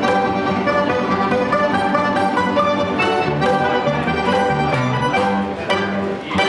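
Street trio of balalaikas and a button accordion playing a classical melody, sustained accordion chords under plucked, tremolo string lines.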